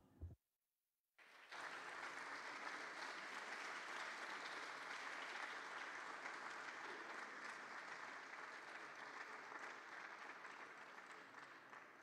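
Audience applauding, starting about a second and a half in after a brief moment of total silence, and tapering off near the end.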